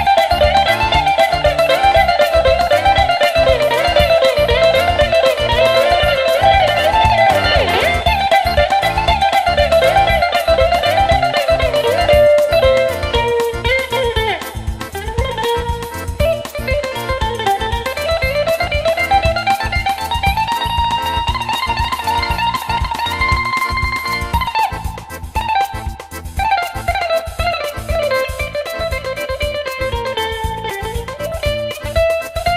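Bouzouki played solo, a fast picked melody of rapid notes winding up and down, with a short lull about 25 seconds in before the line picks up again.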